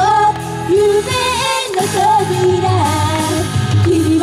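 Japanese idol pop song played loud through PA speakers: female vocals with a wavering melody over a backing track of bass and beat. The bass drops out briefly about a second and a half in.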